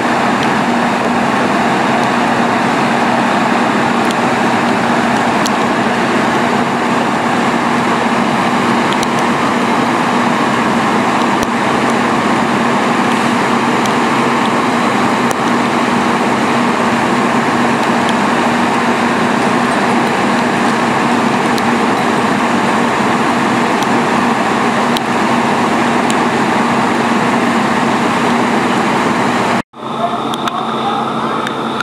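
Fire engine's diesel engine running steadily while it pumps water into charged hose lines, a constant loud drone with a steady hum under it.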